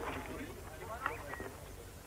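Faint background voices fading out over a steady low hum in an old film soundtrack.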